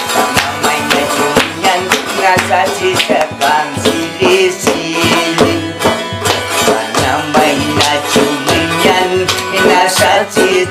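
Khowar folk music: a Chitrali sitar (long-necked plucked lute) plays a running melody over the steady beat of a hand-struck frame drum.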